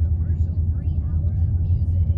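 A car driving along a road, heard from inside the cabin: a steady low rumble of engine and road noise.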